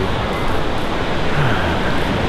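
Steady rush of ocean surf breaking on the beach, mixed with wind rumbling on the microphone.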